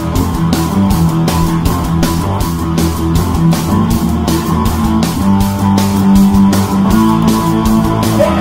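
Heavy rock or punk instrumental with no vocals: an electric guitar riff over drums keeping a fast, steady beat.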